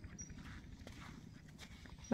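Faint outdoor background noise with a few soft knocks.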